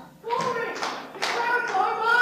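Audience clapping mixed with young people's voices calling out, starting a moment after the music stops.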